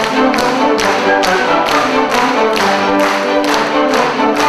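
Chamber orchestra playing a brisk dance tune, strings to the fore, driven by sharp, regular percussive beats about twice a second.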